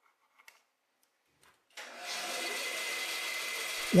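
Near silence, then a little under two seconds in a bandsaw starts running, a steady even machine sound with a thin high whine that holds level.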